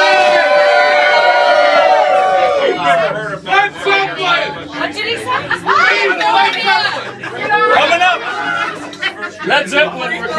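A group of people shouting together in one long held call, which falls away about two and a half seconds in, then loud overlapping chatter and shouts from a crowd of drinkers toasting.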